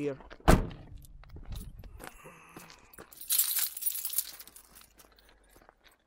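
Handling noise from a handheld camera: a sharp knock about half a second in, a few light clicks, then a second or so of rustling.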